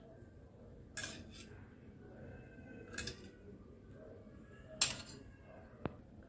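Steel spoon clinking against steel bowls a few times as spoonfuls of milk are added to gram flour; the clinks are faint and spaced out, the loudest one about a second before the end.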